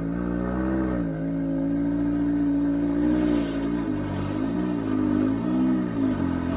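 A car engine idling steadily, its pitch dipping and picking up again briefly about a second in and a few times near the end.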